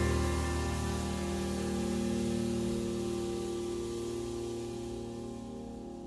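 Acoustic piano chord ringing and slowly fading away, the closing chord of a jazz trio tune.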